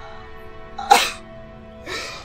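Sad music holding steady notes, with a man's loud sob about a second in and another starting near the end.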